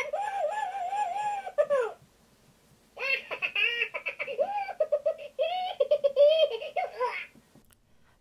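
Spinning Bob Minion toy's electronic voice, set off by the button on its belly: high-pitched Minion-style talking in two phrases, the second starting about three seconds in.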